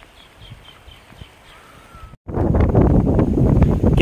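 A bird chirps faintly about five times in quick succession. Then, after a sudden cut a little past halfway, there is loud, irregular rustling and crackling noise, the loudest thing here.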